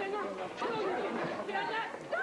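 Several young people's voices talking over one another in a crowded scuffle, with no single speaker standing out.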